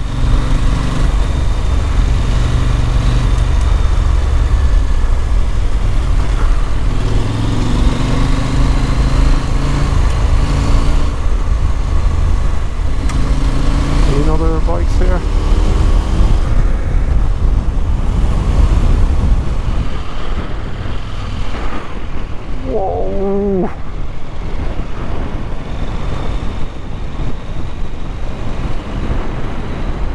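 Husqvarna Norden 901's parallel-twin engine running on the move, its pitch rising and falling with the throttle, under heavy wind noise on the microphone and tyre rumble on gravel. It gets somewhat quieter about two-thirds of the way through.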